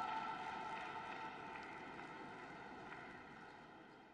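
A steady background hum made of several held tones, fading out gradually.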